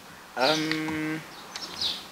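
A person's voice holding one long, level hesitation sound, like a drawn-out "uhh", for nearly a second.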